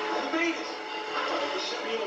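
A person's voice talking, with music underneath.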